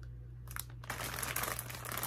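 Plastic snack bags of plantain chips crinkling as they are handled and shuffled, starting about half a second in.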